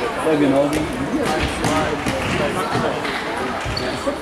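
An indoor football match in a sports hall: the ball knocks off feet and the hard floor a few times, with voices calling over the play.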